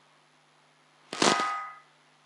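Dry-erase marker drawn across a whiteboard: one short squeaky scrape about a second in, under a second long.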